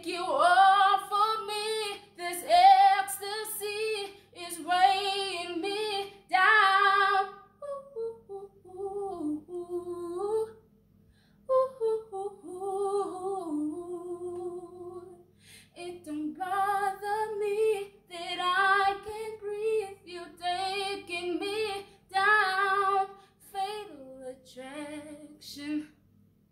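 A woman singing solo and unaccompanied, with vibrato on held notes. The phrases turn softer and lower for several seconds in the middle, with a short pause, then grow loud again.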